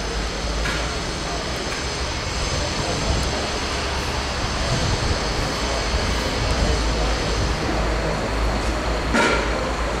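Outdoor street ambience: a steady low rumble of traffic with indistinct voices from the crowd of reporters, and a brief sharper noise about nine seconds in.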